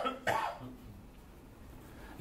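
A short cough in the first half-second, then a quiet room.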